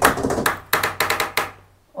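A door knocking and rattling in a quick run of sharp knocks for about a second and a half, then stopping, over a faint low hum.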